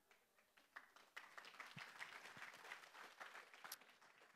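Faint, scattered applause from a seated audience, a dense patter of hand claps that starts under a second in and dies away just before the end.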